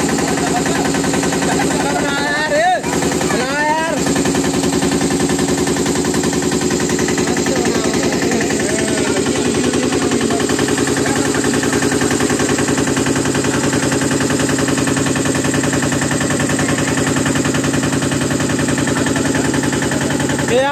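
Motorboat engine running steadily, a rapid even chugging, as the boat moves across the river. Voices break in briefly about two to four seconds in.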